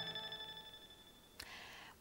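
The last chord of a news programme's theme music dying away over about a second, then near silence. A faint click about one and a half seconds in, followed by low hiss.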